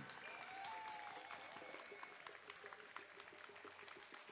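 Faint applause from a small outdoor crowd, a little louder in the first second or so, then dying away to near silence.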